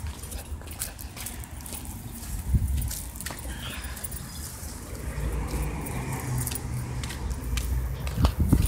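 Wind rumble and handling noise on a handheld phone microphone during walking, with scattered light clicks and a heavier rumble around two and a half seconds in.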